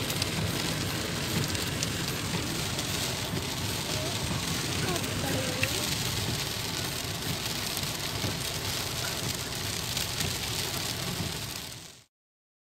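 Rain drumming on a car's windscreen and roof, with wet road noise, heard from inside the moving car as a steady hiss; it fades out just before the end.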